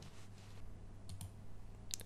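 Two soft clicks of a computer mouse, about a second in and near the end, over a faint steady electrical hum.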